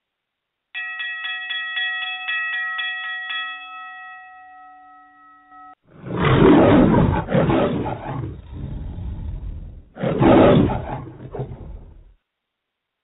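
A rapid run of bell-like chime strokes, about four a second, that rings on and then cuts off suddenly. Two loud lion roars follow, about four seconds apart. Together they form a radio show's segment-transition sound effect.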